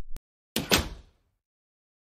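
Door sound effect: one sudden door sound about half a second in, dying away within about half a second.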